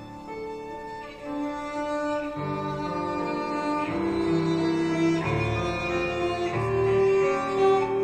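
Violin playing a melody in long held notes with grand piano accompaniment, the piano's bass changing every second or so; the playing grows louder about a second in.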